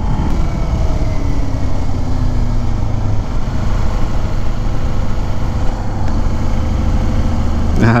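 Kawasaki Ninja 250 (2018) parallel-twin engine running steadily under way. It runs smooth and quiet, without the tapping noise the engine had before its dealer repair.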